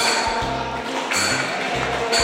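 Devotional aarti music in a temple hall: a steady beat of one ringing strike about every second, deep drum notes and a held melody line, with worshippers clapping along.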